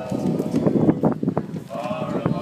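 Barbershop quartet singing a cappella, men's voices in close harmony. A held chord gives way to a louder, lower, choppier passage in the middle, and a new chord sets in near the end.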